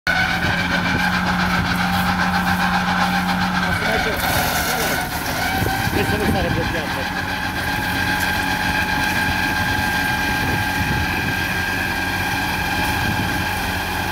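Tractor running with a SaMASZ disc mower driven, a steady machine sound with a held whine. The pitch shifts slightly about four seconds in, together with a short hiss.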